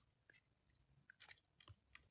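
Near silence with a few faint, short clicks in the second half.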